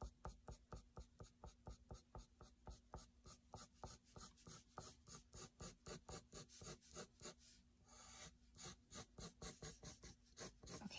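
Dark graphite pencil scratching on paper in quick, even shading strokes, about four or five a second, with a short pause about three-quarters of the way through.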